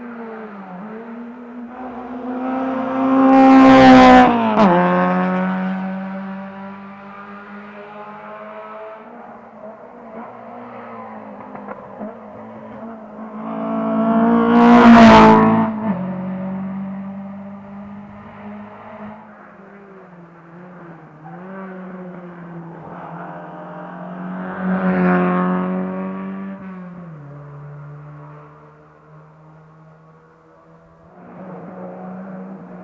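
Rally car engines on a twisty asphalt stage, rising to a loud pass close by about 4 seconds in and again about 15 seconds in, with a quieter pass near 25 seconds. Between passes the engine note dips and rises as the cars brake, change gear and accelerate away.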